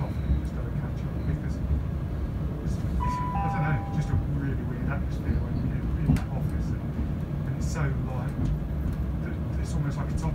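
Class 170 Turbostar diesel multiple unit running along the line, a steady low rumble of engine and wheels on rail heard from inside the carriage. About three seconds in, a short two-note falling chime sounds.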